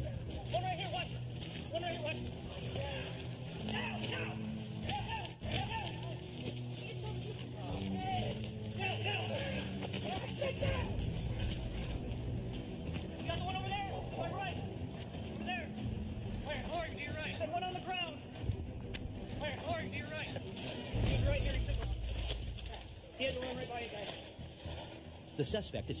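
Indistinct voices with no clear words, broken up throughout, with a few heavier low thumps.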